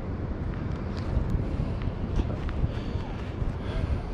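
Wind rumbling on the microphone: a steady low noise with a few faint ticks and brief faint tones over it.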